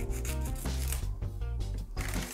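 Scissors cutting through a strip of adhesive tape: a rough rubbing, cutting noise, over background music.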